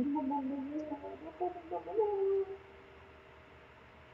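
A person's voice holding one long, drawn-out "I..." for about two and a half seconds, wavering slightly and settling on a steady pitch near the end.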